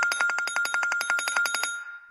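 Mobile phone ringing with a telephone-bell ringtone: a rapid, even trill of about fourteen pulses a second over a steady high tone, stopping shortly before the end.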